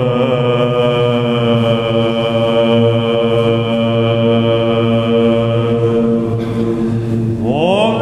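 Byzantine chant in the Grave mode (Varys) by male chanters: a long, steady held note over a low drone (ison). Near the end a voice slides upward into a new phrase.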